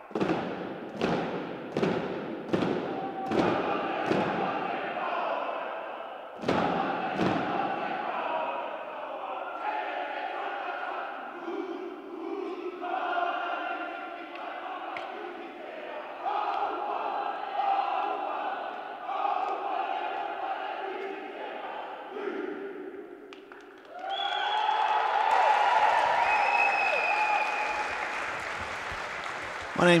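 A haka performed by a wheelchair rugby team: a group of voices chanting and shouting in unison, with sharp body slaps about twice a second over the first few seconds. It ends in a louder, sustained stretch of shouting and crowd noise for the last several seconds.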